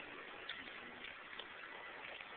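Faint footsteps on pavement, soft clicks about one a second over a low hiss.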